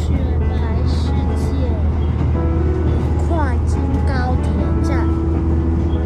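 Running noise of a diesel railcar on the Tadami Line heard from inside the car: a steady low rumble throughout, with a voice and music over it.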